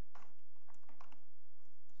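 Scattered faint clicks of someone typing on a computer keyboard, over a steady low hum.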